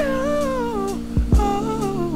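Background R&B music: a wordless sung vocal line falling in two phrases over sustained chords, with a soft low beat in between.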